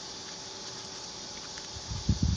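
Steady background hiss with a faint, even hum underneath; no distinct sound stands out.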